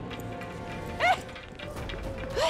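Dramatic TV-serial background score: a faint held tone with a short, sharp sting about a second in.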